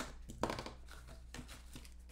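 Hands handling a cardboard trading-card box and plastic-wrapped card packs: a few light knocks and crinkly rustles.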